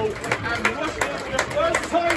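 Football crowd clapping in a steady rhythm, about three claps a second, with voices shouting over it at the final whistle.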